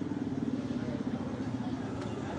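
Field sound at a roadside: a motor vehicle's engine running nearby as a steady low hum over street background noise, easing off slightly near the end.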